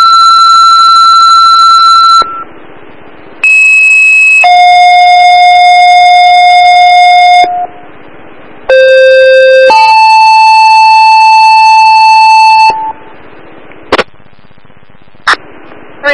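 Two-tone sequential fire dispatch paging tones heard over a scanner: three pairs, each a short tone of about a second followed by a long steady tone of about three seconds at a different pitch, alerting fire and ambulance companies to a call. Radio hiss fills the gaps, and two short clicks come near the end.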